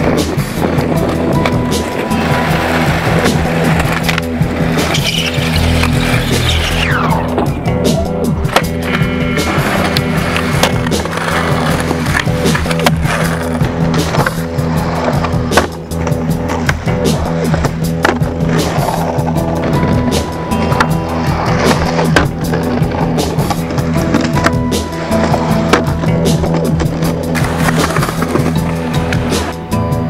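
Music plays over skateboard sounds: urethane wheels rolling on concrete, with sharp clacks from the board popping and landing tricks.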